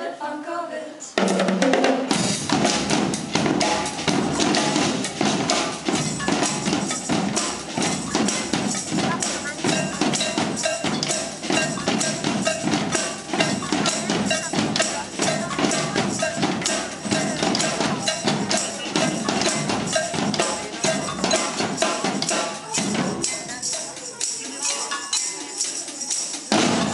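Percussion ensemble of drum kits, snare drums and congas with hand percussion playing a dense, fast rhythm together. It starts sharply about a second in and thins to a quieter passage a few seconds before the end.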